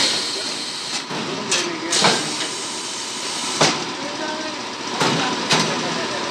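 Semi-automatic seal-and-shrink packaging machine running on a bottle-wrapping line: a steady mechanical hiss and hum, broken by about half a dozen sharp clacks.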